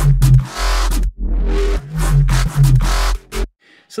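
Electronic bass line playing through an EQ with a narrow boost around 132 Hz that brings out really harsh, muddy low-mid frequencies; the playback stops about three and a half seconds in.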